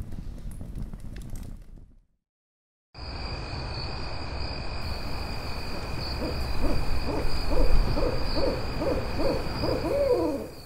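An owl hooting in a quick run of about two hoots a second, starting about six seconds in and growing louder, over a night ambience with a steady high whine and a low rumble. Before it, a low rumbling sound fades out about two seconds in, followed by a second of silence.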